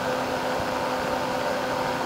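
Steady background hiss with a faint low hum running evenly through a pause in speech: the room and recording noise of an interview room.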